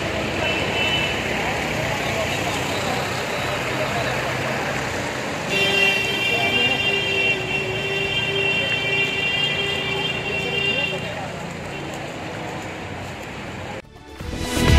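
Traffic noise on a flooded street, with motor vehicles running through the water. A vehicle horn sounds one long steady note that starts about five seconds in and stops about five seconds later.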